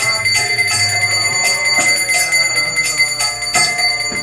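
Kirtan music led by a continuously rung hand bell, whose steady high ringing carries over regular cymbal-like strikes and low drumming.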